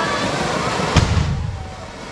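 A single loud, sharp firecracker bang about a second in, followed by a low rumble that dies away. Crowd voices can be heard before it.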